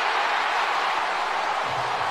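Stadium crowd cheering steadily, a dense wash of voices with no single words, as the home crowd reacts to a quarterback sack.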